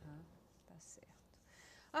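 Quiet lull in conversation: a spoken word trails off, then soft breathy, whisper-like sounds over room tone, and a woman's voice starts up at the very end.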